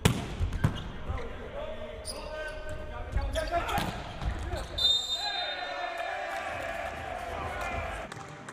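Indoor volleyball rally: a sharp hand strike on the ball right at the start, a second hit a moment later, and further hits among players' shouts and crowd voices. About five seconds in comes a brief high steady tone, then a long held call into the end.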